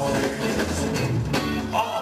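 Live rock band playing, with electric guitar, amplified through the hall's PA.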